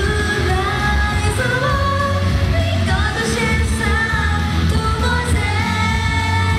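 Live idol pop song played loud through a concert sound system: a woman singing a melodic line over a backing track with a heavy, steady bass beat.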